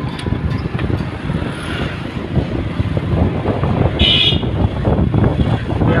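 Steady rumble of a moving motor vehicle and street traffic, with a short vehicle horn beep about four seconds in.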